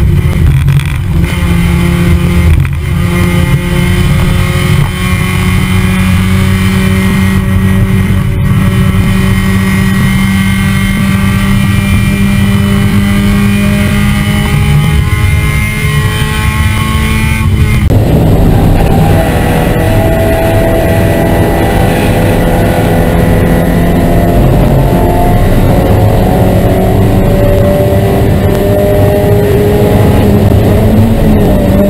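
Spec Miata (Mazda MX-5) race car's four-cylinder engine under sustained throttle, heard through an onboard camera with wind and road noise, its pitch climbing slowly and steadily. About two-thirds of the way through the tone changes abruptly, and the slow climb carries on.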